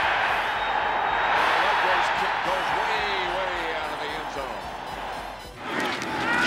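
Large stadium crowd cheering, a steady wash of noise that slowly fades and drops away sharply near the end.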